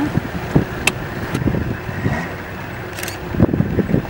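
A vehicle engine running steadily, with irregular knocks and bumps throughout, the loudest a little after three seconds.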